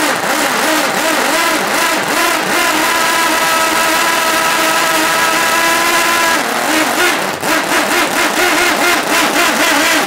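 Glow-fuel Wankel rotary model aircraft engine running at high speed, a loud high-pitched buzz. Its speed holds steady through the middle, then wavers up and down over the last few seconds.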